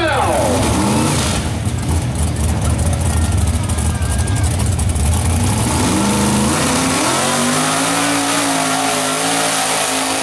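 Mud-bog truck's engine revving hard: the revs drop about half a second in, it runs rough and loud at full throttle for several seconds, then the revs climb about six and a half seconds in and are held high.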